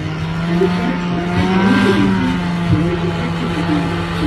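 Engine of a powered paraglider trike running steadily in flight, its pitch rising and falling back briefly about halfway through.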